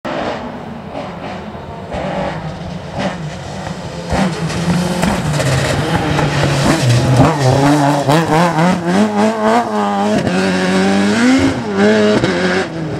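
Rally car engine at full throttle on a stage, approaching with a few sharp cracks in the first seconds, then passing close and pulling away, its note rising and falling over and over between gear changes.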